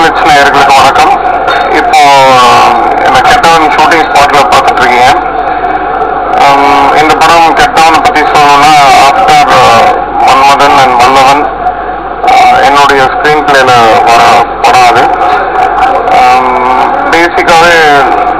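A man speaking continuously into a handheld microphone in an interview, over a steady faint hum-like tone.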